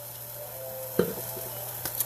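Shredded cabbage stir-frying in a large pan, a steady sizzle, with a single sharp knock about a second in.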